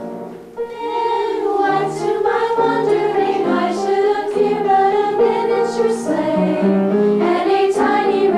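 Teenage girls' choir singing a Christmas song together. A brief break about half a second in, then the voices come back in full for the rest of the phrase.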